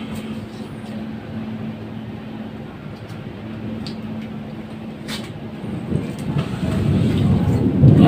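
Steady background hum and hiss, with a few light clicks of foam pieces being handled, the clearest about five seconds in; a low rumble grows louder over the last two seconds.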